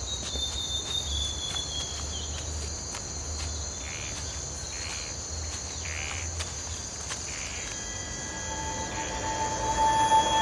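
Steady high-pitched chirring of insects over a low rumble of outdoor ambience. About eight seconds in, a held tone comes in and grows louder toward the end.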